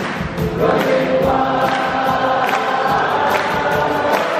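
Live rock band with acoustic guitars and an orchestra playing, with many voices singing a held chorus together; the notes settle into long sustained chords about half a second in.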